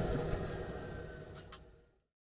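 Steady machinery hum heard on an airliner's flight deck, fading out to silence near the end, with two faint clicks about a second and a half in.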